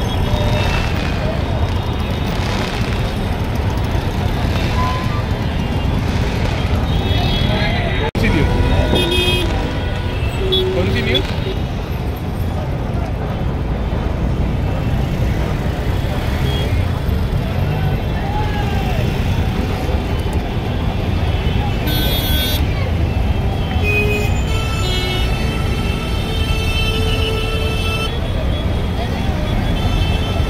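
Jammed city street traffic: idling vehicles, a crowd of voices, and vehicle horns honking now and then, with a longer held horn-like tone near the end.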